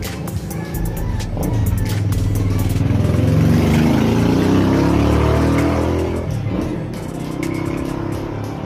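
A motor vehicle's engine passing close by, growing louder to a peak about halfway through and rising in pitch as it accelerates, then fading away.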